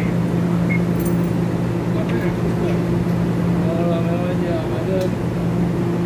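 Steady low hum of a standing TEMU2000 Puyuma electric train, its onboard equipment running while it waits at the platform.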